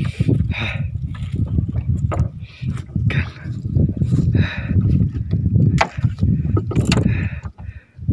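A trevally being lifted from a landing net at the side of a wooden canoe: water splashing and dripping, with a couple of sharp knocks against the hull late on, over a steady low rumble.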